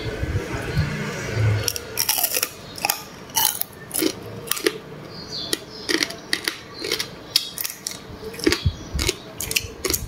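Close-up eating of small crabs: shells and claws cracking and crunching between teeth and fingers, a quick irregular run of sharp crackles with chewing in between.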